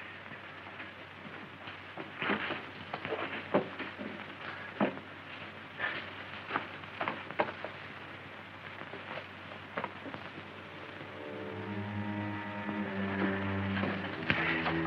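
Scattered knocks and shuffles of people moving about and handling a man on a straw-covered floor, over the steady hiss of an old film soundtrack. About eleven seconds in, sustained film-score music fades in and grows louder.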